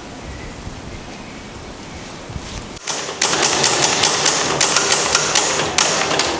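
A steady background hiss, then about three seconds in a sudden loud run of rapid clattering clicks and knocks.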